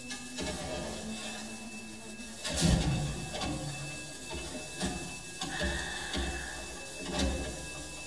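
Live experimental electronic music: a held low drone tone for the first couple of seconds, then irregular deep low hits with noisy, crackly textures and a brief high tone around the middle.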